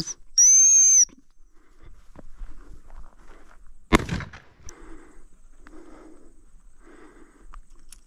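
A single long, shrill blast on a dog whistle, starting about half a second in and lasting a little over half a second: the usual stop command to a working spaniel. About four seconds in there is a sharp knock, followed by faint repeated rustling in the tussock grass.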